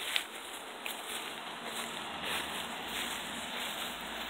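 Steady hiss of outdoor background noise, with a sharp click just after the start and a fainter one about a second in.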